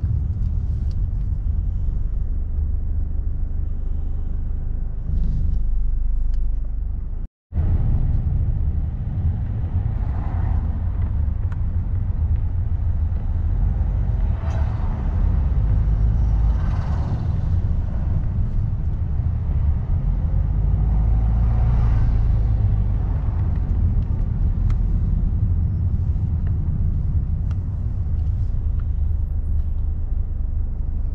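Road noise inside a moving car's cabin: a steady low rumble of engine and tyres, with a few louder swells along the way. The sound cuts out briefly about seven seconds in.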